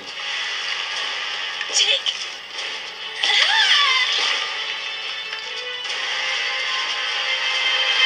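Soundtrack of an animated TV episode: music mixed with sound effects over a steady noisy rush, with a falling tone about three seconds in.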